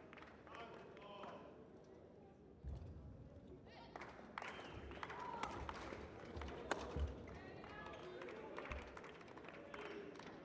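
A badminton rally: sharp racket strikes on the shuttlecock and players' thudding footsteps on the court, beginning a little under three seconds in and running irregularly on, over a low murmur of voices in the hall.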